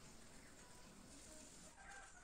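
Near silence: faint room tone with a few faint, indistinct sounds.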